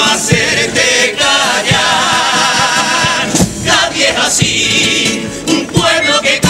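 Male carnival comparsa choir singing a pasodoble in several voices over Spanish guitar accompaniment, with long held notes sung with vibrato. Sharp percussion strokes mark the beat about every second or so.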